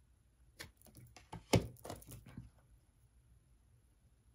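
Tarot cards being handled: a scattered run of light clicks and taps as cards are moved and drawn from the deck, the loudest a single tap about a second and a half in.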